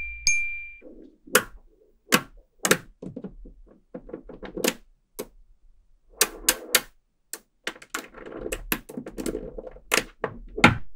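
Small magnetic metal balls clicking and snapping against each other, with short rattles as they are pushed into flat grids on a table; the clicks come irregularly, in denser clusters in the second half. A ringing chime tone fades out in the first second.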